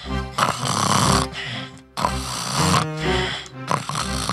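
Loud cartoon snoring from a sleeping dog, in long, even snores about every second and a half, played over background music.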